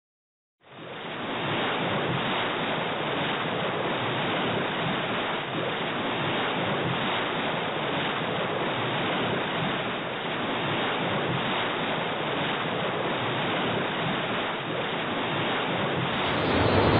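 Steady rushing sound of sea surf with wind, coming in quickly about half a second in and holding at an even level without distinct wave swells.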